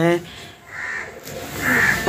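A crow cawing twice, a short harsh call a little before the middle and a louder one near the end.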